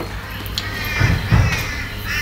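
Handling noise on a jeweller's workbench: a hand reaching across and picking up a polishing cloth, with light rustling and a couple of soft low thuds about a second in.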